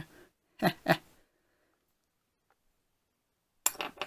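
A man's two short breathy chuckles, then near silence, with laughter starting again near the end.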